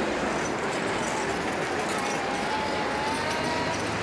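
Steady city street noise, mostly a hum of traffic, with a faint thin tone drawn out for a couple of seconds midway.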